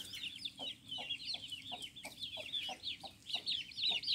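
Chickens: chicks peeping in a rapid stream of short, high, falling chirps, over short low clucks that come about three times a second.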